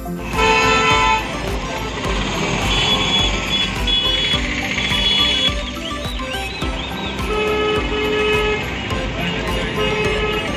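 Busy street traffic at a bus stand: engine rumble with vehicle horns honking, a longer horn blast right at the start and two short toots near eight seconds, with voices in the background.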